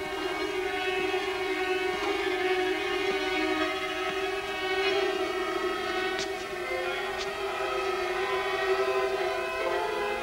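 Film score: a sustained, held chord of bowed strings, with two brief high notes about six and seven seconds in.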